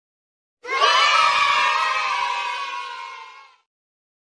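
A crowd of voices cheering and shouting, starting abruptly about half a second in and fading out over about three seconds.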